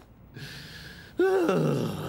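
A man's wordless vocal sound from a cartoon character: a single pleased exclamation, starting a little past halfway. It rises briefly, then glides down in pitch for most of a second.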